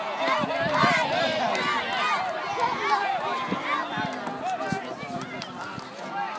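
Many voices of youth football players and spectators shouting at once, raised and high-pitched, overlapping with no single speaker standing out; the noise eases off over the last couple of seconds.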